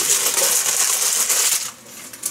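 Plastic packaging of a bag of coffee crinkling as it is handled. It is a steady rustle with small crackles, and it stops abruptly near the end.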